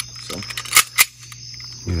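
Crickets chirping steadily, with two sharp clicks a quarter of a second apart near the middle.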